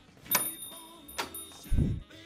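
A shop-door bell rings as a customer comes in: a sharp strike about a third of a second in, then a high ring lasting about a second and a half. A short low thud comes near the end.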